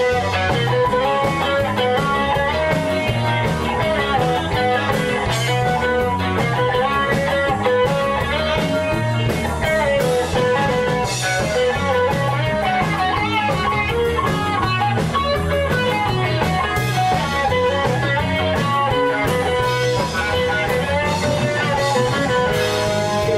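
Live rock band playing an instrumental break, an electric guitar carrying the melody over bass guitar and drums.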